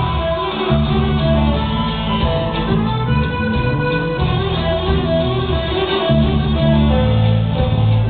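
A live rock band playing on stage, with guitars over a steady bass and drums, recorded from among the audience.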